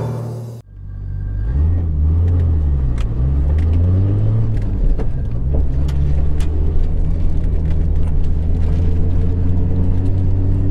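Nissan Skyline GT-R (BCNR33) RB26 twin-turbo straight-six heard from inside the cabin, its exhaust fitted with an inner silencer. The engine note rises and falls twice, then settles into a steady drone. A short bit of music ends about half a second in.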